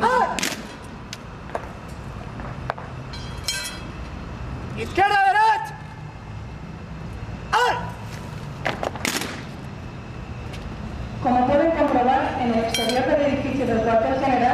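Honour-guard drill in a courtyard. One loud shouted command comes about five seconds in. Several short, sharp clacks and metallic clinks come from rifles and a sword handled in drill, one of them loud about nine seconds in. Voices start again near the end.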